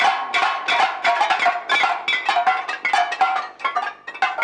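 Prisoners beating plates against the iron bars of a cell door in protest: a rhythmic, ringing metallic clatter of about three strikes a second, with many blows overlapping.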